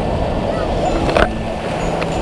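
Surf washing in and wind buffeting an action camera's microphone, with people's voices calling faintly over it and a brief knock a little over a second in.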